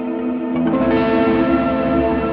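Electric guitar played through effects, with distortion and chorus, ringing out in sustained, layered notes. New notes come in about half a second to a second in, and the sound swells with a low rumble underneath.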